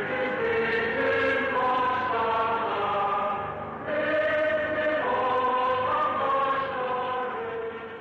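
A choir singing a slow melody in long held notes, with a short break about four seconds in and fading near the end.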